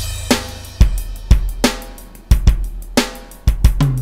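A recorded drum kit played back alone from a soloed track: kick, snare and hi-hat/cymbals in a steady groove.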